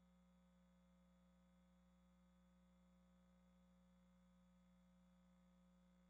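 Near silence: only a faint steady hum.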